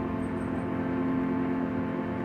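Harmonium holding a steady chord, its reeds sounding evenly with no tabla strokes.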